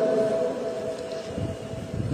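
A pause in a man's talk: background hiss with a faint steady tone that fades out about a second in.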